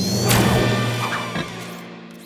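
Cartoon soundtrack sound effect over background music: a short rising whistle that ends in a crash-like hit about a third of a second in, then the music carries on with low held notes.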